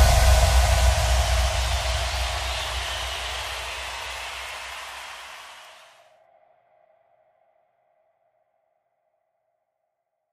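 Ending of a rawstyle electronic track: a wash of noise over a low rumble fades away over about six seconds, leaving a faint thin held tone that dies out near the end.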